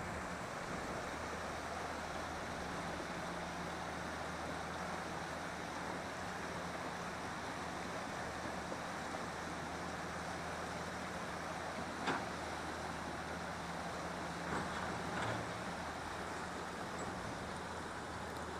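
River water rushing over rapids: a steady, even rush, with one short knock about twelve seconds in.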